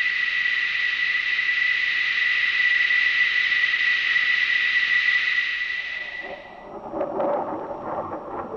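Jet engine whine from an F-14 Tomcat's turbofans on the ground: a steady high whistle over a loud hiss. It fades out about six seconds in, giving way to a lower, rougher jet noise.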